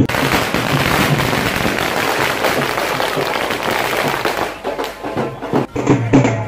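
A string of firecrackers going off in a rapid, dense crackle of pops, thinning out about five seconds in.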